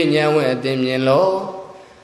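A Buddhist monk's voice chanting in a drawn-out, sing-song intonation, holding each note and stepping down in pitch, then trailing off into a short pause near the end.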